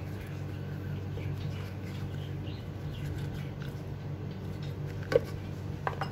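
A steady low hum with faint handling noise as thick cream is squeezed from a carton into a plastic blender jar, and two short sharp clicks near the end.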